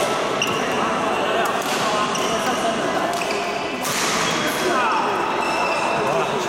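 Echoing badminton hall: sharp racket hits on shuttlecocks and short sneaker squeaks on the court floor, over a steady murmur of voices.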